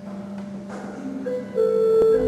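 Balbiani Vegezzi-Bossi pipe organ starting to play: a single held note, joined about a second and a half in by louder, higher sustained notes.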